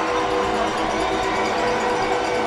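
Arena goal horn sounding one long, steady chord over a cheering home crowd, celebrating a home-team goal.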